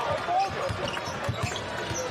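Basketball being dribbled on an arena's hardwood court, a steady run of bounces about two a second, with the arena crowd and voices underneath.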